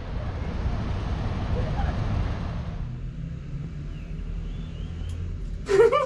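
Road traffic rumbling steadily below, with a hiss that thins out about halfway through. Voices and laughter come in near the end.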